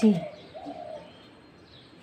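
A single short bird call, one steady note lasting about half a second, shortly after a voice trails off.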